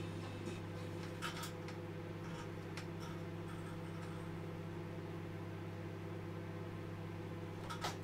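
Microwave oven running with a steady low mains hum, a few faint clicks over it.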